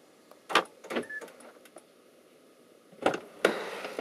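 Two sharp clunks from a car's door locks as it is unlocked, about half a second apart. About three seconds in, the driver's door latch clicks and the door swings open.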